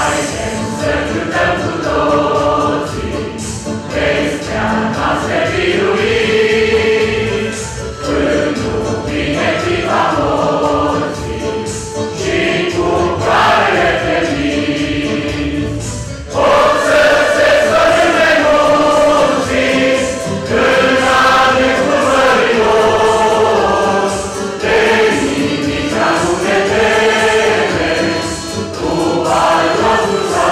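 Mixed choir of men and women singing a sacred song in parts, with long held notes; it swells louder about sixteen seconds in.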